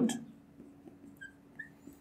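Faint short squeaks of a marker tip on a glass lightboard while writing, a few brief chirps in the second half, over a faint steady hum.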